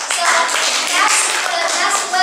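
Audience applauding in a classroom, with some voices mixed in.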